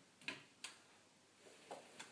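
Faint taps of a large board protractor knocking against the chalkboard as it is taken off, two short clicks in the first second and a smaller one near the end.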